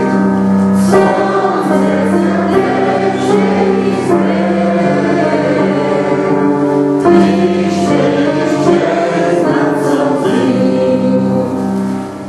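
A choir singing Christian worship music in long held chords, with short breaks between phrases.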